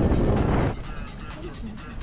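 A low rush of wind and engine noise from a motorcycle at motorway speed, which drops away under a second in to a quieter hum. Background music with a steady beat runs over it throughout.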